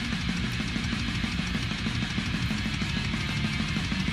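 Instrumental heavy metal passage: electric guitar and drum kit playing a riff at a steady, dense rhythm.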